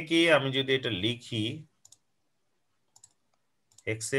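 A voice talking for the first second and a half or so, then a pause broken by two faint clicks, and talking again near the end.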